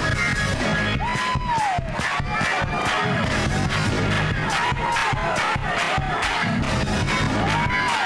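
Gospel praise-break music, slowed down and pitched low in a chopped-and-screwed edit, driven by a steady fast beat of about three hits a second. A congregation shouts and cheers over it.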